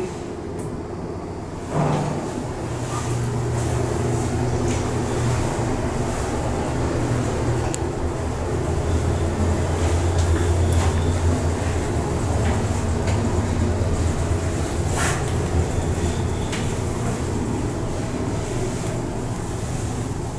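1972 Otis traction elevator car in motion, heard from inside the cab: a steady low hum and rumble that builds toward the middle and eases toward the end. A thump about two seconds in, and a few faint clicks along the way.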